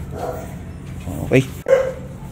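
American Bully puppy giving short, sharp yips about a second and a half in.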